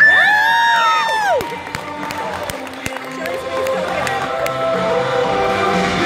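Audience cheering with several high-pitched shrieks from children, held for about a second and a half and then dropping away, over a pop-rock song played through arena speakers in a large, echoing hall.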